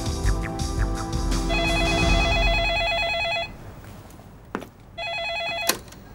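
Desk telephone's electronic ringer warbling twice: the first ring lasts about two seconds under background music that stops with it. The second ring is cut short near the end by a clunk as the handset is lifted.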